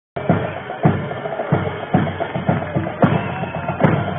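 Parade drums playing a marching cadence, with bass drum beats about twice a second.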